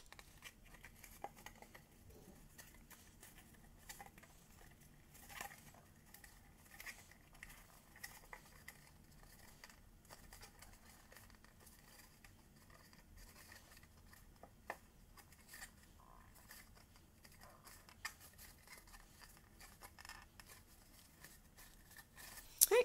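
Faint rustling and scattered light taps of cardstock as fingertips press glued paper tabs down one by one inside a paper hat crown.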